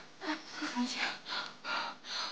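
A young woman breathing hard in quick, ragged gasps, about three a second, some with a short low moan: panting from exhaustion while being helped along.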